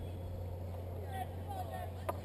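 Faint, distant voices of players calling across an open field, over a steady low hum.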